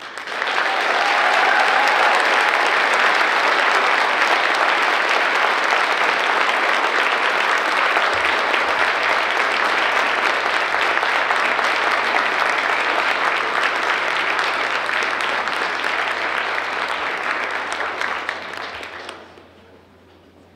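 Large audience applauding in an auditorium, the clapping starting abruptly, holding steady, then dying away about a second before the end.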